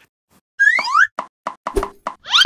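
Cartoon sound effects for an animated logo: a quick rising whistle-like glide about half a second in, then a rapid run of five or six short pops as the letters pop onto the screen.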